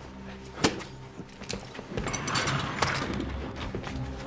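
Film action sound effects: a sharp knock about half a second in, then, about two seconds in, a louder rush of crashing noise with a crack in it, all over a low steady drone.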